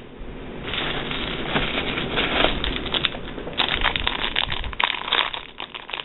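Thin plastic packaging crinkling and rustling continuously as hands dig through a box of bagged wax tarts and pull one out in a clear plastic bag.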